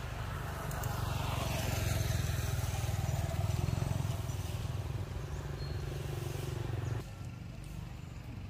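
A motor vehicle engine running close by, swelling for a few seconds with a falling whine as it passes, then dropping away suddenly near the end.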